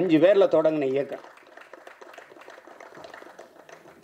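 A man speaking into a microphone for about a second, then about three seconds of faint, scattered audience clapping.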